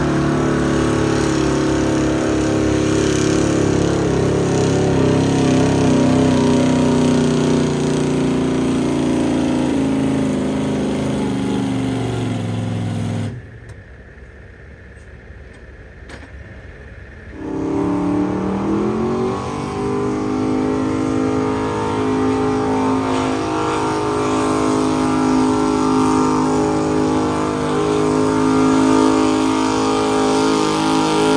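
Engine of a vehicle pulling the sled, running hard with its pitch sinking slowly. About 13 seconds in the sound drops away suddenly; some four seconds later an engine comes back, rising in pitch, and then holds steady and high.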